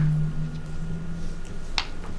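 A low steady hum in a room, with a sharp click at the start and another near the end.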